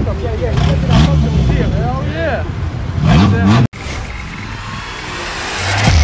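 Bystanders' voices over idling car engines on a street-race strip, with an engine revving up about three seconds in. The sound cuts off abruptly, and a swelling whoosh builds toward the end.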